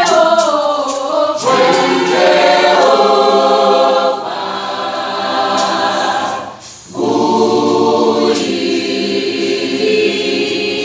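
A mixed high school choir of boys and girls singing an a cappella gospel song in close harmony, holding long chords. The singing drops for a brief breath about two-thirds of the way through, then comes back in full.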